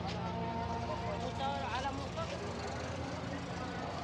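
Busy street ambience: traffic running steadily, with a voice heard briefly about a second and a half in.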